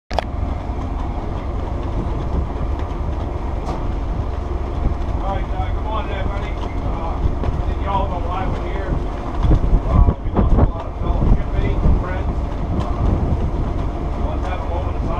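Steady low rumble of wind buffeting the microphone on a cargo ship's open deck while the ship is underway, with faint, indistinct voices of a group of people. A few louder gusts hit the microphone about ten seconds in.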